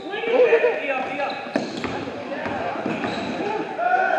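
Basketball game sound in a gymnasium: voices of players and spectators calling out, with a basketball bouncing on the court about one and a half seconds in.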